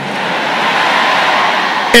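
Congregation applauding and cheering in response to the sermon, a steady wash of noise that builds slightly.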